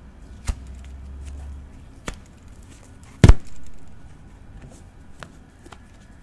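Sharp clicks and snips of hands working craft material into a ring close to the microphone: three clear ones, the third, about three seconds in, much the loudest, then a few faint ticks.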